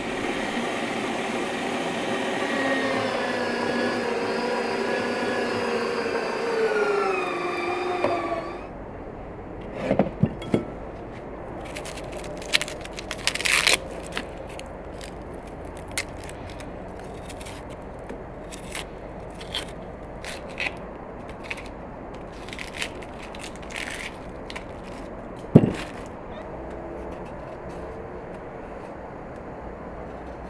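Onions being peeled and trimmed by hand with a kitchen knife: dry skin scraping and crackling, broken by many sharp knife clicks and one loud tap near the end. For the first eight seconds a louder sound with several sliding pitches, like a tune, lies over it.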